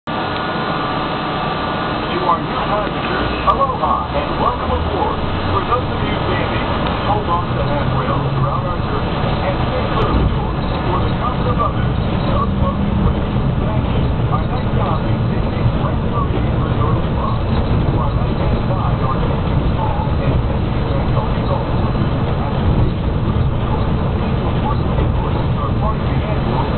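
Walt Disney World monorail running, heard from the front cab: a steady low rumble with a motor hum that rises in pitch over the first dozen seconds and then holds. Muffled voices talk underneath.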